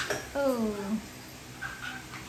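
French bulldog giving one falling whine, lasting just over half a second, with a short higher squeak near the end.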